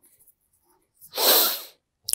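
A man sneezing once, a single short burst about a second in that fades within a second.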